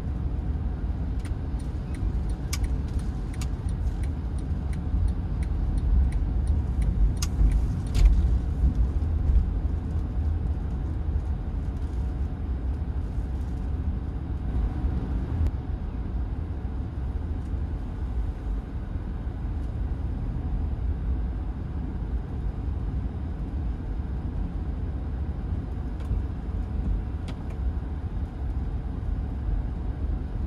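Road and engine noise heard from inside a moving car's cabin: a steady low rumble, with a run of light clicks through the first eight seconds or so.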